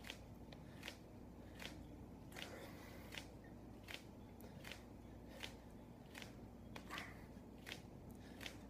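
Faint rhythmic breathing of a man doing push-ups, one short breath about every three-quarters of a second, over low room hum.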